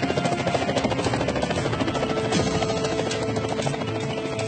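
Helicopter rotor chopping rapidly and steadily, with music underneath.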